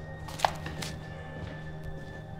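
A few short, sharp clicks, one much louder with a brief metallic ring just under half a second in, over a low, steady background music drone.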